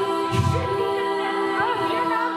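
All-female a cappella group singing a Bollywood song medley: sustained vocal chords with a lead line gliding over them near the end. A short low thump comes about half a second in.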